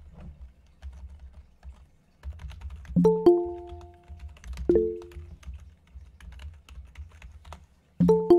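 Google Meet notification chimes, short two-note tones: one about three seconds in, a shorter, lower one near five seconds, and the first chime again at the very end, matching the alerts for people asking to join the call. Under them are scattered soft typing clicks and a low hum.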